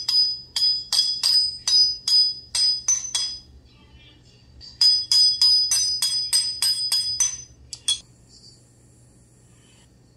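Flat-faced jeweller's hammer striking jewellery wire on a steel bench block, each blow ringing metallically: flattening the flame-annealed wire outline of a petal. Two runs of quick, evenly paced strikes, about three a second, with a pause of about a second between them, then one last strike near the end.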